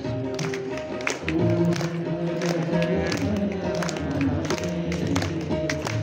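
Hindu devotional aarti music with sustained melodic notes, crossed by regular sharp percussive strikes.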